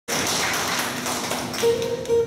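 A steady noisy hiss with faint clicks. About one and a half seconds in, a single acoustic guitar note is plucked and rings on, the start of the guitar playing.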